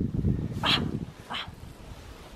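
Deep snow crunching and compacting, with a winter coat rustling, as a person sits and lies back into it; it fades toward the end. Two short, higher-pitched sounds come through about two thirds of a second apart.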